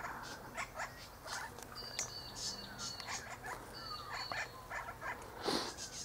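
Birds calling: many short high chirps, with thin held whistled notes about two and four seconds in and a few brief notes that fall in pitch.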